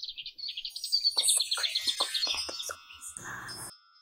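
A fast, high, bird-like chirping trill, with quick gliding strokes underneath, then a short burst of noise with a held tone about three seconds in.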